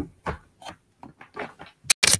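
Handling noise close to the microphone: a few light, scattered clicks and knocks, with one sharper click near the end, as a laptop's charger and its plug are checked.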